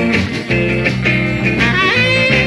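Early-1960s rock and roll recording playing an instrumental passage between sung verses, the band going at a steady beat.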